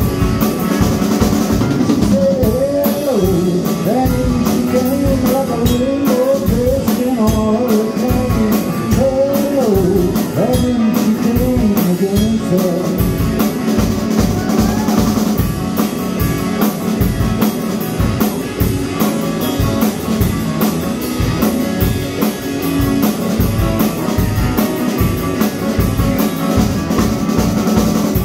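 Live rock band playing an instrumental passage: electric guitar, drum kit and keyboard over a steady beat, with a lead line that bends in pitch through the first half.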